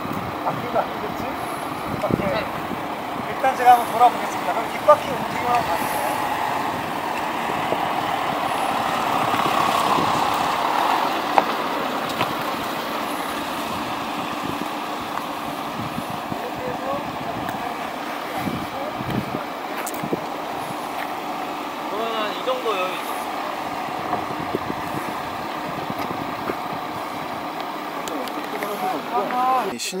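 Volkswagen Touareg's 3.0 V6 TDI diesel engine running at low speed as the SUV crawls through a tight full-lock turn on dirt, swelling a little around ten seconds in. People talk in the background.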